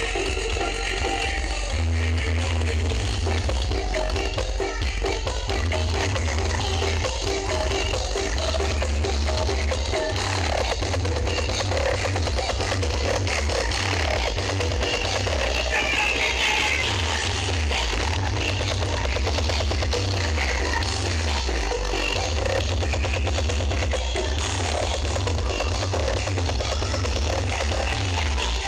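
Music played very loud through a truck-mounted 'sound horeg' sound-system speaker stack, with a heavy bass that pulses throughout.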